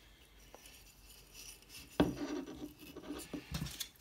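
A small gift being packed into an organza drawstring bag: quiet at first, then a sharp knock about halfway through, followed by rustling and light clicks as the bag is handled.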